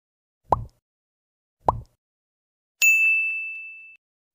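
Sound effects of an animated subscribe button: two short clicks a little over a second apart, then a single bell ding that rings on and fades out.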